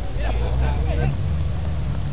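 Voices calling out across a football pitch during play, words indistinct, over a steady low rumble.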